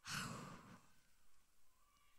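A woman's sigh: one breathy exhale close into a handheld microphone, lasting under a second at the very start.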